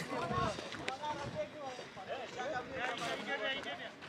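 Background chatter of several people's voices overlapping, some of them high-pitched, with no clear words.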